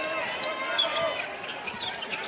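A basketball being dribbled on a hardwood court, with high squeaks from sneakers on the floor over steady arena crowd noise.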